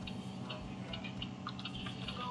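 Computer keyboard being typed on: light, irregular key clicks, a few per second.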